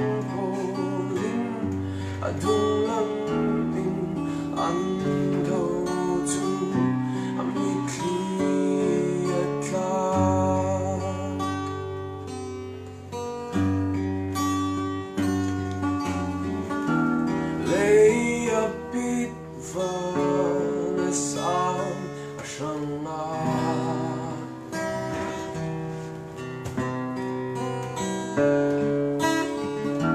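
Two acoustic guitars playing together, strumming and picking chords through an instrumental passage of a song.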